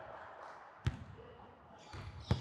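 A basketball bouncing once on a hardwood gym floor, a single sharp bounce about a second in.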